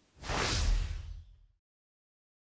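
A whoosh sound effect with a deep rumble underneath, swelling quickly and fading away within about a second and a half: the transition into the logo outro.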